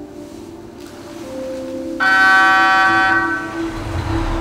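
A bright bell-like chime struck once about halfway through, ringing and fading away over about a second and a half, above a steady low hum.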